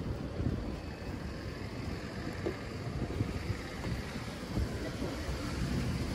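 Wind buffeting a handheld microphone over faint outdoor street ambience, a steady low rumble with no clear events.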